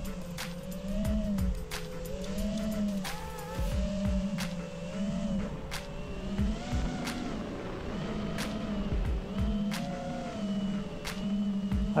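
Motors of an iFlight DC5 FPV quadcopter spinning Gemfan Hurricane 51433 three-blade props, their whine rising and falling in pitch as the throttle is worked up and down.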